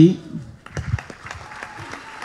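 Audience applauding after the speaker's line: a scatter of separate claps over a faint crowd haze, starting about half a second in as his voice trails off.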